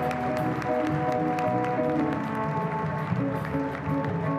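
Live instrumental walk-off music from a small stage ensemble that includes a cello, playing held melodic notes over a moving bass line.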